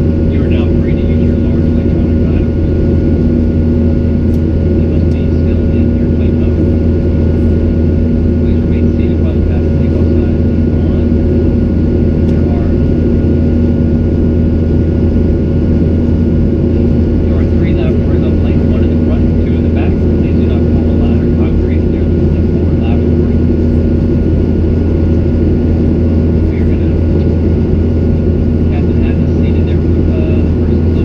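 Steady cabin drone of a Boeing 737-800 in flight: the CFM56 jet engines and airflow make a constant roar with a low hum and a few steady tones, level throughout. Faint voices of other passengers come and go under it.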